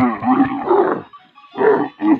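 A dromedary camel calling loudly: a groaning call of about a second, then a shorter one near the end.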